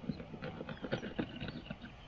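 A knife scraping and cutting at a fish on a plastic board, an uneven run of short scrapes and clicks.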